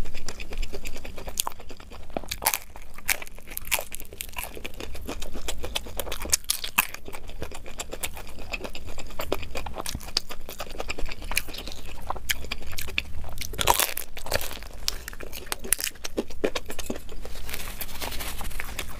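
Close-miked crunching and chewing of crisp deep-fried samosa pastry, with a bite into a raw green chilli partway through, sped up to double speed: a dense run of crackling crunches.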